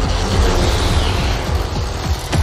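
Cinematic trailer music and sound design with a heavy low rumble and a sweeping whoosh that falls slightly in pitch over the first second or so.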